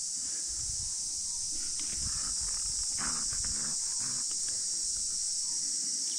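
Steady, shrill insect chorus droning without a break.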